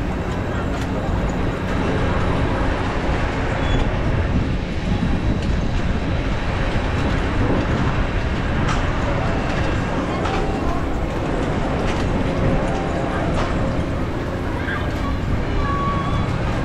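Carnival ride ambience: a steady low mechanical hum and drone of running ride machinery, with indistinct voices in the background.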